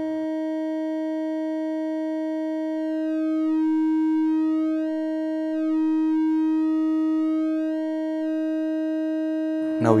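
Triangle wave from an Intellijel Dixie VCO in a Eurorack modular synth, held at one steady pitch and clipped by the Circuit Abbey Invy's amplification and offset. About three seconds in, the tone changes and grows louder as the offset is turned, easing off the clipping into a plain triangle wave for a few seconds, then the clipped tone returns near the end.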